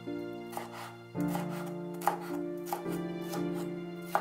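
Chef's knife chopping bell peppers on a wooden cutting board: a few sharp, irregularly spaced knife strikes against the board, over soft background music.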